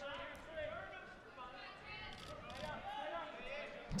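Faint voices of people calling out in a gymnasium, well below the level of the commentary.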